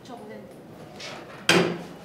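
A single sharp knock on a wooden desk about one and a half seconds in, with a softer rustle just before it, as a man gets up abruptly from his chair and snatches his phone off the desk.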